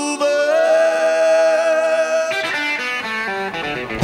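Electric guitar playing alone in a live rock recording, with no bass or drums under it: a note bent up and held for about two seconds, then a quick run of shorter, mostly falling notes. The full band comes back in at the very end.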